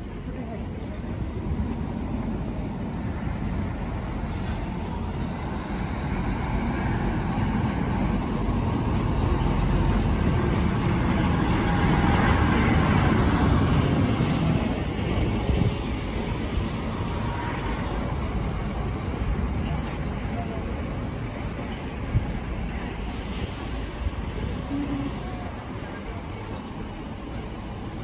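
Street traffic noise: a low motor-vehicle rumble that builds to its loudest about halfway through as a vehicle passes, then eases back.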